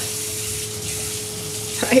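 Spinach, spices and cream sizzling quietly in a pan on the stove, a steady soft hiss with a faint steady hum beneath it.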